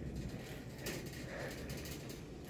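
Quiet grocery-store room tone: a low steady hum with a few faint soft knocks about a second in.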